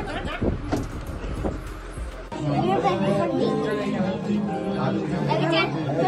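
Several people chatter and talk over one another; a little over two seconds in, the sound changes abruptly and music with a steady low bass line and a melody comes in under the voices.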